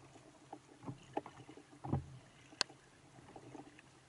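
Underwater sounds picked up by a diver's camera: a faint hiss with scattered small clicks and knocks, a dull thump about two seconds in and a sharp click shortly after.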